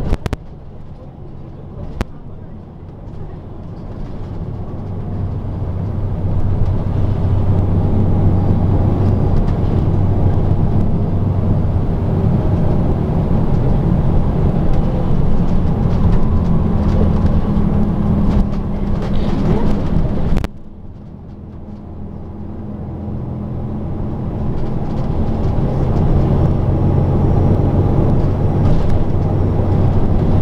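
Nishitetsu city bus's diesel engine heard from inside the passenger cabin, building up as the bus pulls away and accelerates, then running steadily. Its sound drops suddenly about two-thirds of the way through and builds up again as the bus picks up speed.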